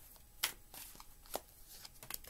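A deck of tarot cards being shuffled by hand: a few separate sharp card slaps, the loudest about half a second in.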